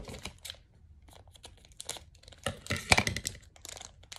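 Pokémon trading card pack wrapper being torn and crinkled open by hand. Light crackles come first, then a louder burst of crinkling and tearing from about two and a half seconds in.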